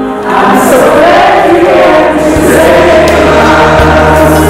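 A group of young voices singing together as a choir, with a low accompaniment note coming in about halfway through.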